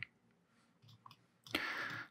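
A few faint clicks of a computer mouse about a second in, during near silence, then a short, soft rushing noise near the end.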